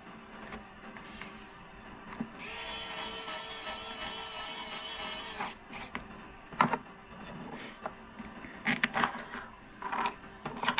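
Small pen-style electric screwdriver running for about three seconds, a steady whine that starts and stops abruptly, driving a screw into the hotend's fan assembly. A few sharp clicks and light knocks of small parts being handled follow.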